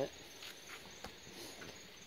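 A faint, steady chorus of cicadas in the background, with a small click about a second in.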